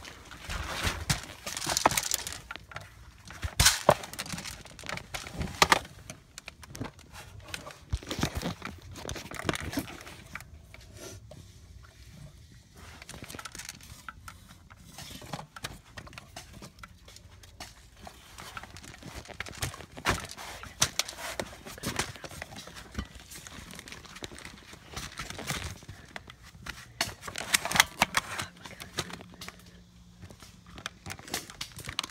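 Handling noise from a blaster-mounted camera rubbing and bumping against dirt, leaves and wire: irregular rustling and scraping with sharp knocks scattered throughout.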